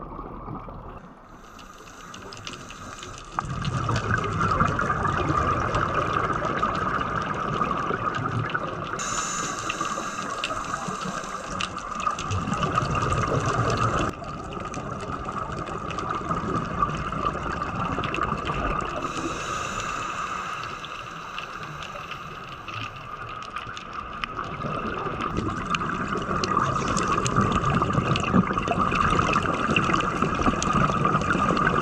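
Underwater sound of a scuba dive: muffled rushing water and the gurgle of divers' regulator bubbles, continuous, with abrupt changes in level about three and fourteen seconds in.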